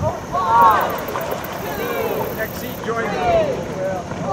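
Dragon boat crew shouting rhythmic calls in unison, about once a second, in time with their paddle strokes.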